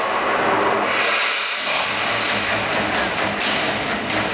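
Show music from large outdoor loudspeakers mixed with a loud, steady rushing noise, with a low hum entering about halfway through.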